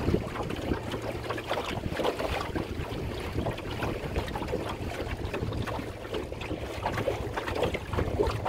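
Wind buffeting the microphone, with a low rumble, over water slapping and splashing irregularly against the hull of a small Shellback sailing dinghy under way on choppy water.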